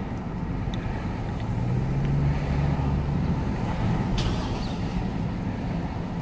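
Cabin sound of a 2003 Chevy TrailBlazer's 4.2-litre inline-six driving slowly in second gear: a steady low engine and road rumble. A low hum swells about two seconds in and then eases. A brief sharp sound comes about four seconds in.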